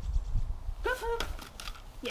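A short two-part voice call about a second in, its pitch rising then holding, over a steady low rumble.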